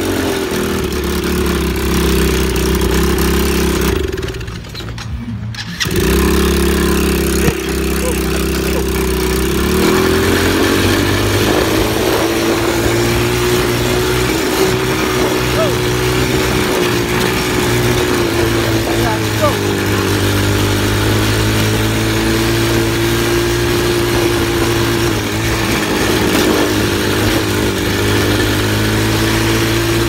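Small ATV engine running steadily under way, its note dipping briefly about four seconds in, then settling a little higher from about ten seconds and wavering gently with the throttle.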